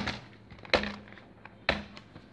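Two sharp knocks about a second apart, each followed by a brief low ring.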